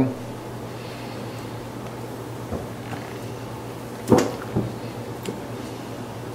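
Faint handling sounds of fly line being pulled through a towel pad coated with line conditioner, over a steady low hum. A sharp click about four seconds in, with a few lighter ticks.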